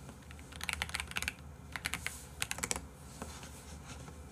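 Typing on a computer keyboard: three short bursts of keystrokes, the first about half a second in, the others around two seconds and just before three seconds.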